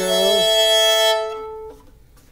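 Violin holding a long bowed note that stops a little over a second in and rings away over the next half second.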